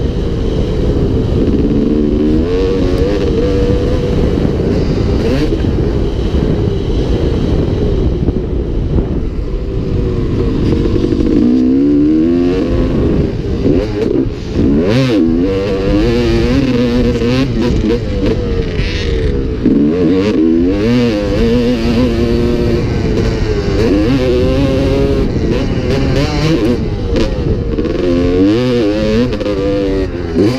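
2002 Honda CR250R's two-stroke single-cylinder engine, heard from the rider's helmet, revving up and dropping off again and again as it accelerates and shifts around a motocross track.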